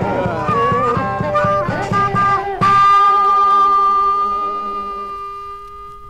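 A Chicago blues trio of harmonica, guitar and drums plays the last bars of a song with an even drum beat. About two and a half seconds in, the band hits its final chord, which is held as a steady ringing note and fades out.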